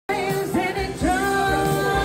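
A woman singing into a microphone over musical accompaniment; about a second in her voice slides up into a long held note.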